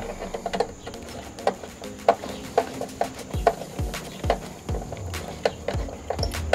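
Background music with a beat, and many short, light clicks and taps.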